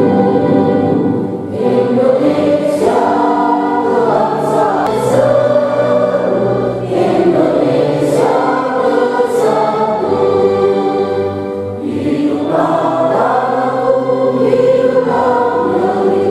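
A large group of people singing together in chorus, following a conductor, in sustained phrases that dip briefly between lines.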